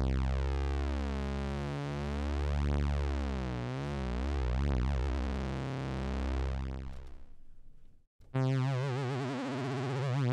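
Casio CZ synthesizer bass-and-lead sound (from the CZ Alpha sample library) holding a low note for about seven seconds, its overtones slowly shifting and phasing before it fades away. After a short silence a second low note sounds with a steady vibrato wobble from the pitch LFO.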